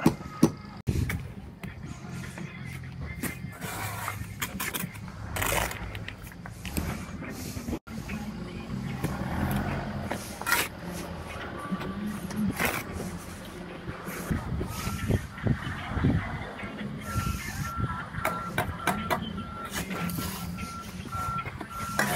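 Steel brick trowel scraping and knocking as mortar is spread and cut on concrete blocks: a string of short scrapes and taps. Over the last several seconds a high beeping tone runs, typical of a site vehicle's reversing alarm, with background music underneath.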